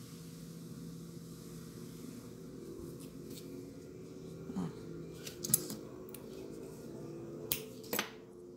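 Faint handling of crochet yarn and a metal finishing needle as the yarn end is drawn through the stitches of a crochet square, with a few sharp clicks past the middle and near the end, over a steady low hum.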